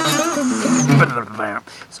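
A man's voice making a drawn-out, wordless vocal sound for about a second and a half, then saying "so" near the end.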